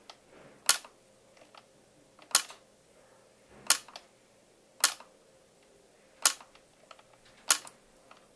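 Ellex Ultra Q Reflex YAG laser firing single shots: six sharp clicks about 1 to 1.5 seconds apart. Each click is a pulse vaporizing part of a vitreous floater (a Weiss ring) in the eye.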